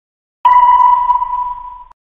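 A single long electronic beep, a steady mid-high tone lasting about a second and a half, starting about half a second in and cutting off near the end. It is one of a series of identical beeps a few seconds apart with dead silence between them.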